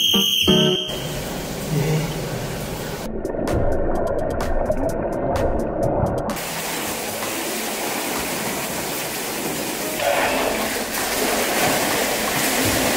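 A short, shrill whistle blast to start a swim, then a swimmer's splashing and churning pool water over background music. For a few seconds in the middle the water is heard muffled from underwater, with bubbly clicks.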